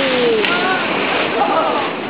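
Big sea waves crashing against a sea wall, a loud, continuous rush of breaking water and spray, with people's voices calling out over it in falling exclamations and a sharp click about half a second in.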